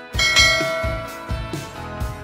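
A bright bell chime rings out just after the start and slowly fades, over background music with a steady beat.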